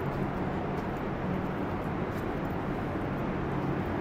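Steady low rumble of urban background noise: distant road traffic and city hum, with no distinct events.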